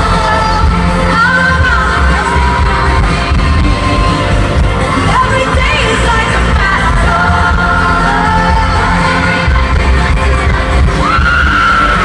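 Live pop music over a stadium sound system: a female lead vocal sung over amplified backing with a heavy bass.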